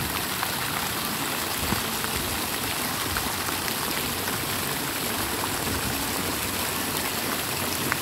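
Several fountain jets splashing down into a shallow pool: a steady hiss of falling water, flecked with small drip-like splashes.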